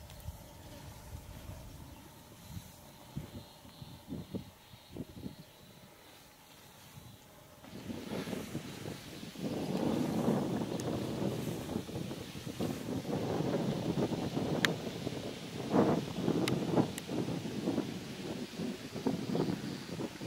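Wind buffeting the camera microphone: quiet for the first several seconds, then uneven gusty rumbling from about eight seconds in.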